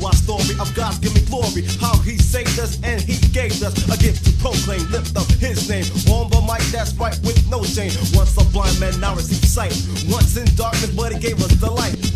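Old-school holy hip-hop track: rapping over a steady beat with a heavy bass that gets deeper about two-thirds of the way through.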